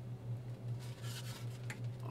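Faint scraping and a small click as two 3D-printed plastic hammer pieces are pushed together into a snug fit, over a steady low hum.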